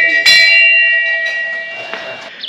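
Hanging brass temple bell rung by hand. It clangs once more about a quarter second in, then rings on and slowly fades.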